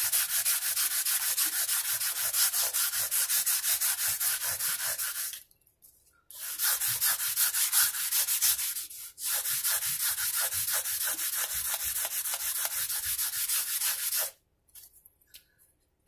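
A 180-grit abrasive pad on a block, rubbed rapidly back and forth along a mandolin's metal frets, a dry scratchy sanding that levels and crowns them. The strokes run in three spells, with a short pause a little over five seconds in and another near nine seconds, and they stop shortly before the end.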